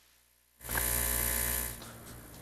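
A sudden burst of electrical buzz and hiss from a faulty live audio feed, cutting in out of dead silence about half a second in and dying down into a fainter hiss after about a second. It is the sign of a fault in the broadcast's audio line.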